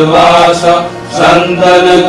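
Devotional prayer song sung in a chanting style over a steady low drone, with a short break between sung lines about a second in.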